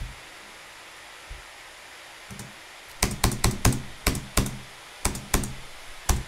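Sharp clicks of keys being tapped on a laptop, about ten quick, uneven taps in the second half after a quiet start.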